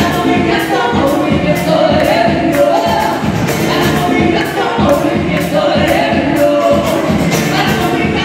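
Live band performing: two women singing together over acoustic guitar, congas and drum kit, with a steady beat.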